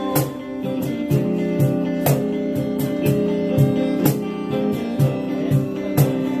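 Acoustic guitars strumming chords over a cajón keeping a steady beat, about two beats a second, in a live instrumental passage without singing.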